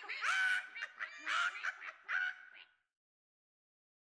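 A bird giving a series of short pitched calls, four or five in quick succession, that cut off abruptly about two and a half seconds in.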